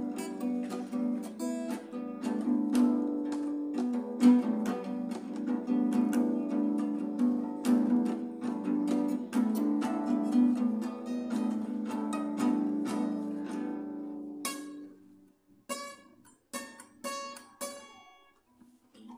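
Instrumental music led by plucked guitar: quick picked notes over a sustained low part. Near the end it drops away to a few scattered plucked notes.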